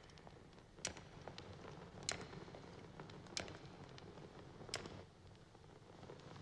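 Faint sharp clicks, four of them spaced about a second and a quarter apart, over a low steady hum.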